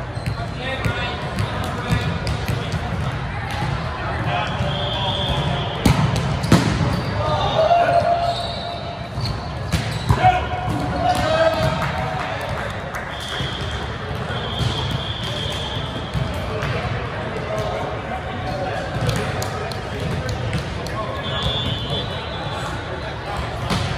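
Indoor volleyball rally in a large echoing gym: players' voices calling out, and the ball being struck, with the sharpest smacks about six and ten seconds in.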